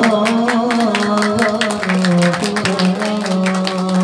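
A male voice sings a long, drawn-out sholawat melisma, holding a note that steps down slightly about two and a half seconds in, over a quick, continuous pattern of hand-drum strikes.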